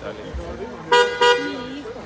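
A car horn sounding two short toots in quick succession about a second in.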